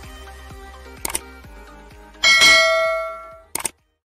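Faint background music, a quick double click about a second in, then a bright bell chime that rings out and dies away, and another quick double click near the end: the sound effects of an animated subscribe, bell and like button.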